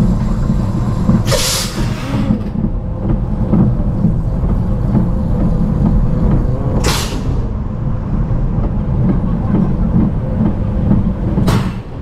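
Vekoma Family Boomerang coaster train being hauled backwards out of the station and up the lift hill: a steady low rattling rumble from the lift and wheels. Short loud hisses come about a second in, around seven seconds and near the end.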